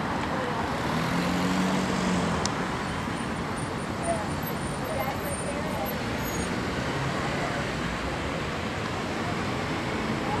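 Steady outdoor city background noise, a constant rumble like road traffic, with faint voices of people in the background.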